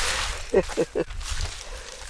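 A man's brief laugh, three short falling voice sounds in quick succession, after a rustling hiss of dry beans being shaken in a woven sieve.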